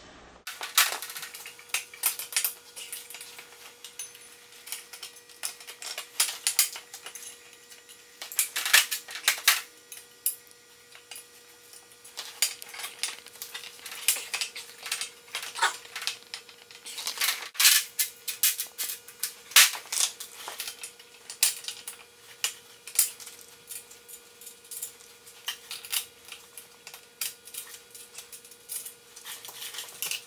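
Steel parts and hardware clinking and clicking in quick, irregular clusters as a wheel is fitted to a homemade kart's steel frame and axle, over a faint steady hum.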